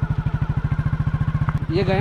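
Motorcycle engine running with a steady, rapid, even exhaust beat as the bike rolls slowly along a dirt track.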